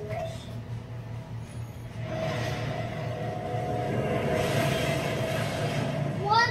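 Soundtrack of a film playing on a television: a steady low rumble, joined about two seconds in by a held mid-pitched tone and a hiss that swells near the end.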